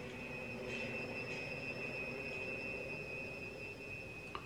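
Quiet film soundtrack: a steady high-pitched tone, with a fainter one above it, comes in a moment after the start and holds, over a faint low hum.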